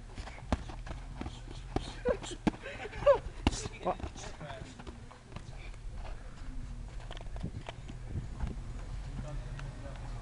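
Padded boxing gloves smacking as punches land during sparring: a string of sharp hits, bunched and loudest in the first few seconds, then sparser. Onlookers' voices and short shouts are mixed in.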